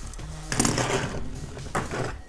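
Plastic blister packaging of a Hot Wheels card being torn and crinkled by hand as the car is pulled out. There is a rustling burst about half a second in and a short crackle near the end.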